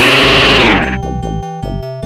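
Electronic background music with a loud noisy crash laid over it that dies away about a second in, after which the music carries on.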